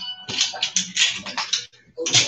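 Sleeved trading cards being shuffled by hand: a quick, uneven run of clicks and rustles that stops shortly before the end.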